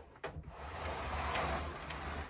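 Metal-cased Cisco 3750 network switch being slid and turned on a wooden shelf: a scraping sound with a short knock near the start and another near the end.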